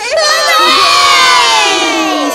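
A group of children cheering together: one long, loud cheer of many voices that slowly falls in pitch.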